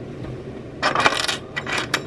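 Small metal rings clinking and jingling as they are handled, in a cluster of quick light clinks about a second in and a shorter one near the end.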